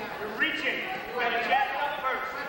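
Spectators shouting to a wrestler: two long, high shouts, the second about a second in, with no clear words.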